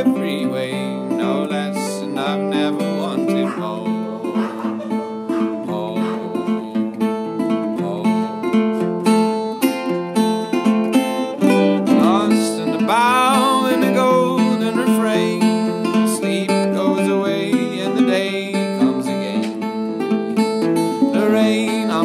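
Metal-bodied resonator guitar fingerpicked steadily in an instrumental passage of an acoustic folk song.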